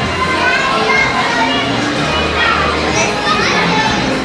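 A crowd of children's and adults' voices chattering and calling out over one another.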